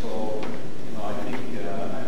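A person speaking far from the microphone in a large, echoing room, words indistinct, with a short knock about half a second in.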